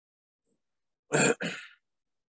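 A person's voice: two short, loud bursts a little over a second in, the second fading away.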